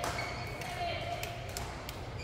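Badminton hall sound: a sharp hit right at the start and a couple of fainter hits about a second later, over a steady low hum of the large hall.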